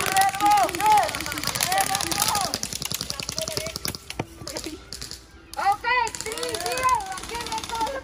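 Airsoft guns firing on full auto, a rapid ticking clatter of shots under loud shouting voices. The firing thins out around the middle and starts up again a little before the end.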